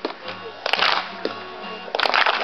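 Acoustic guitar strummed, its chords ringing on between the strokes.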